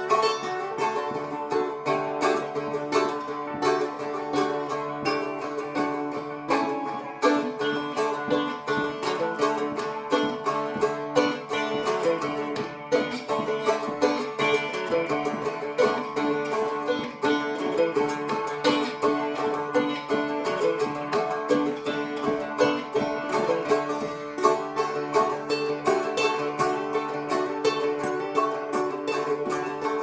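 Two strumsticks, small three-string fretted dulcimers, strummed together in a steady, quick rhythm, with steady held drone notes under the changing melody notes.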